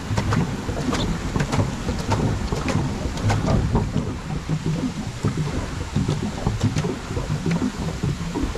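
Swan pedal boat's paddle wheel churning the water as it is pedalled, with many irregular splashes and clicks over a low rumble.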